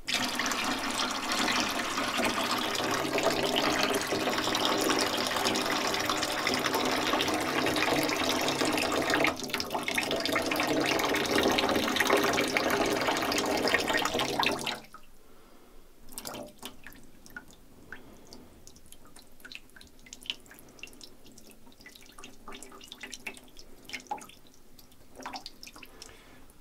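Water running and splashing into a stainless steel sink as rinse water is poured off seeds in a plastic jug, steady for about fifteen seconds and then stopping suddenly. Afterwards only faint small clicks and taps of the jug being handled.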